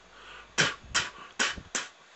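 Four short tongued puffs of breath, "tuh, tuh, tuh, tuh", blown down through tightened lips with the tongue starting behind the teeth: the dry-spit blow used to sound a flute, here without a note.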